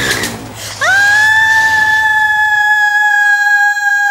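A woman's long, high-pitched scream. It rises sharply about a second in and is then held at one steady pitch.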